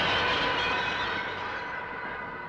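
A synthesized ringing sound effect: several steady high tones hang on and slowly fade away.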